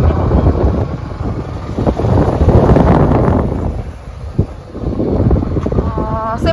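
Wind buffeting the microphone of a camera carried in a moving vehicle: a loud, rough rushing rumble that eases briefly about four seconds in.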